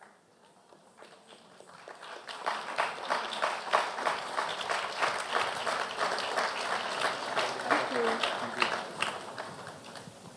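Audience applauding, starting softly about a second in, filling out after about two seconds and fading near the end.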